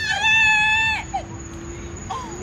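A person's high-pitched, drawn-out squeal that bends in pitch and cuts off about a second in, followed by a faint steady tone.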